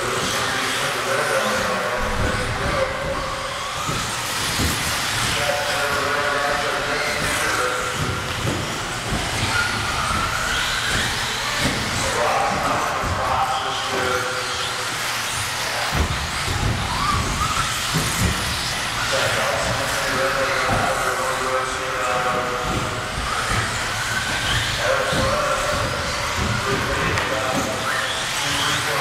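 Electric 1/10-scale 4WD RC buggies racing on an indoor track: short rising motor whines and scattered clatters as the cars hit the boards and land jumps. A voice talks over it most of the time.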